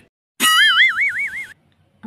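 Cartoon 'boing' sound effect: a springy twang about half a second in, its pitch wobbling up and down about six times for roughly a second before it stops.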